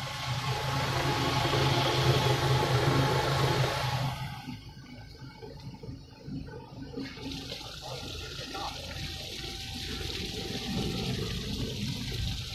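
Sesame seed washing-peeling machine's agitator churning sesame and water in its steel tank, with a steady low hum from the drive, loud until a sudden drop about four seconds in. From about seven seconds a softer steady rush of sesame water runs out of the opened drain valve.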